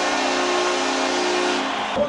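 An arena goal horn sounding a steady low chord over a cheering crowd, signalling a home-team goal; the horn fades out near the end.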